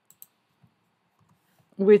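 Two quick, faint computer keyboard keystrokes, a tenth of a second apart, followed by a few fainter key ticks.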